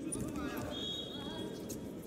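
Indoor arena sound during a wrestling bout: voices calling out over a steady background, a few short knocks, and a brief high whistle about half a second long near the middle.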